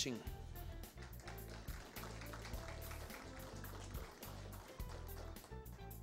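Soft instrumental background music with steady low bass notes.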